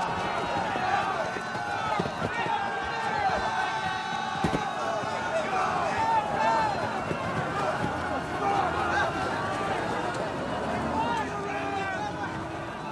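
Several men shouting over one another with no clear words. There is a single sharp knock about four and a half seconds in.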